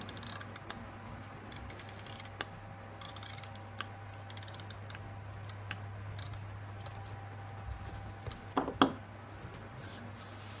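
A handheld tape runner rolled and pressed across a paper planner page, its gear mechanism clicking irregularly with short scratchy runs as the tape is laid down, over a faint low hum.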